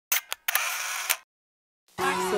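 Camera shutter sound effect: two quick clicks, then about half a second of whirring noise that ends in a sharper click.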